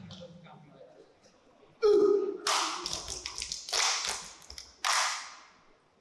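Saman dancers clapping in unison: a loud group shout about two seconds in, then three loud bursts of rapid hand claps a little over a second apart, each falling away quickly. A faint chanting voice at the start.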